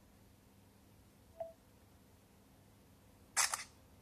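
Smartphone camera app's shutter sound playing once near the end, a short sharp synthetic click-burst from the phone's speaker. A brief faint beep comes about a second and a half in.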